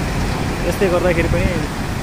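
Steady noise of fast-flowing floodwater and a truck's engine as it fords the flooded river, with a man's voice speaking briefly in the middle.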